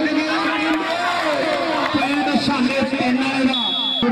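A man talking continuously in Punjabi, a match commentary, over crowd noise. A brief high, steady tone sounds near the end.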